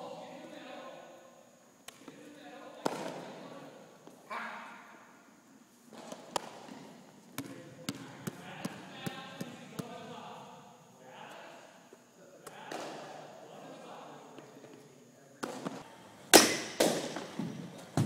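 Indistinct voices talking in a gym, broken by scattered sharp knocks and thuds, with the loudest thuds in a quick cluster near the end.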